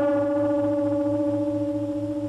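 A large gong ringing out after a single strike, its several tones fading slowly, with a low throb beating a few times a second underneath.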